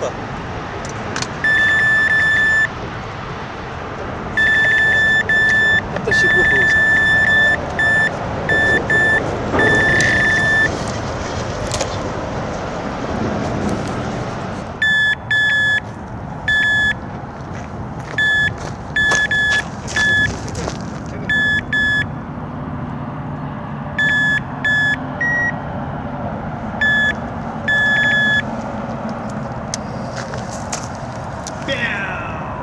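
Electronic carp bite alarms on a rod pod beeping in irregular bursts of a high steady tone, some beeps short and some running a second or two. This is the sign of line being pulled through the alarm as a carp takes the bait (a run). A slightly higher-pitched beep near the end comes from a second alarm.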